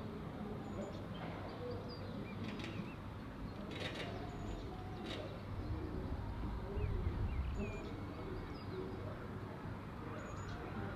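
Outdoor urban ambience: a steady low rumble with small birds chirping, and a few brief flutters like wing flaps in the first half. The rumble swells for about a second near the middle.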